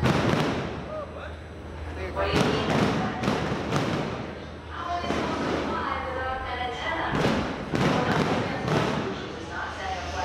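Background crowd voices with a string of sharp, heavy thuds at irregular intervals, bunched between about two and nine seconds in.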